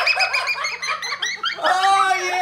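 A child's high-pitched shrieking laughter in quick pulses, set off by the Pie Face game's arm splatting whipped cream into a boy's face. A second drawn-out squeal starts near the end.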